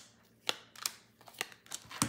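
Tarot cards being dealt onto a woven table mat: a handful of light, separate taps and clicks as cards are set down, the sharpest about half a second in.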